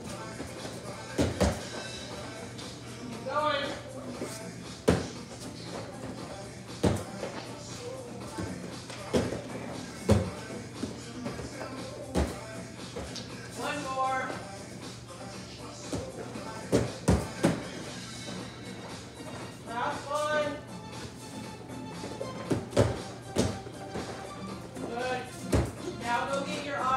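Bare feet and bodies landing on vinyl-covered folding gymnastics mats: a string of dull thuds every second or two at uneven spacing, as children jump and tumble. Music and children's voices carry on underneath.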